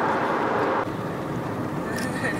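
Steady road and tyre noise heard from inside a moving car. A little under a second in it changes abruptly to a quieter, lower rumble.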